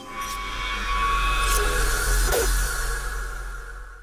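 Electronic intro sting: a deep sub-bass boom under a wash of noisy hiss and ringing tones, swelling in over the first second and fading out near the end.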